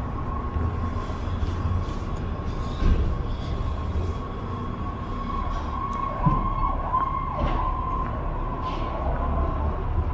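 Downtown street traffic: a low rumble with a steady high-pitched tone running throughout. A couple of short knocks come about three and six seconds in, and a faint falling whine passes near the middle.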